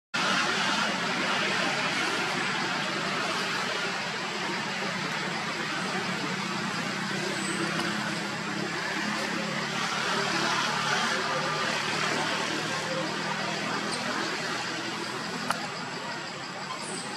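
Steady outdoor background noise, a continuous hiss with a low rumble like road traffic. It cuts out for a moment right at the start and there is a single sharp click near the end.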